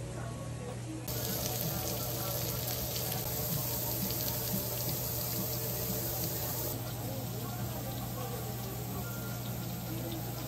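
Pork, sausages and shrimp sizzling on a barbecue grill plate, a steady hiss that grows louder about a second in, over a low steady hum.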